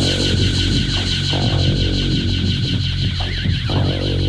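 Electronic drone from a radio show's opening: a steady low hum under a sustained, wavering high tone, with a brief zigzag warble in pitch near the end.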